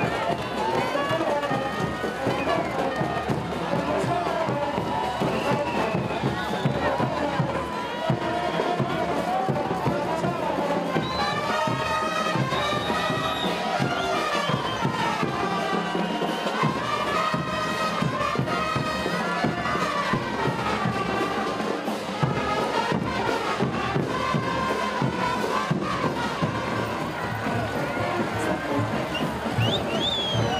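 Live folk band music played for a carnival dance parade, steady and continuous, mixed with voices and crowd noise from the spectators.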